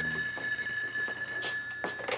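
Telephone ringing in one continuous ring of about two seconds that stops just before the end, with a few soft knocks over it.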